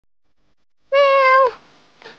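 A woman calling for a cat with a single drawn-out, high-pitched "meo", a meow-like call, about a second in, its pitch dropping as it ends.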